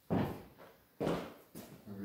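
Heavy footsteps of a person in boots on a bare concrete floor, a thud about once a second, each dying away quickly.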